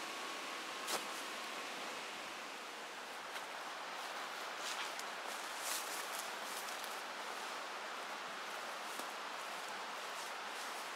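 Steady outdoor background hiss, with a few faint soft rustles and taps.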